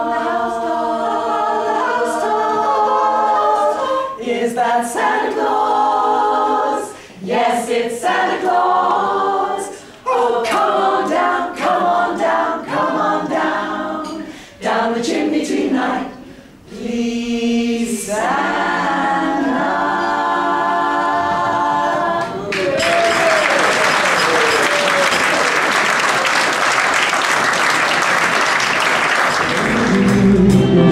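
A small group of women singing unaccompanied in harmony, with a few brief pauses between phrases. About 22 seconds in the song ends and the audience applauds.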